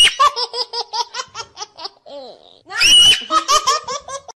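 A child laughing hard in two bouts, each opening with a high squeal and running on in quick 'ha-ha-ha' pulses, with a short break about halfway through.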